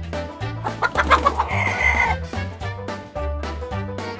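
Chicken clucking: a run of quick clucks about a second in, then a longer drawn-out call, over background music with a steady beat.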